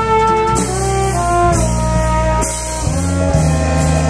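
Slow jazz ballad: a trombone plays a melody of long held notes over piano, bass and drums.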